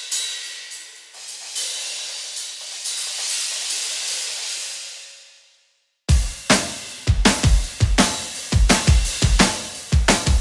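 Sampled cymbals from the Colossal Hybrid Drums virtual instrument: several hits build into a shimmering wash that dies away about halfway through. About six seconds in, a heavy, processed drum groove starts, with deep kick drum and snare hits about twice a second under cymbals.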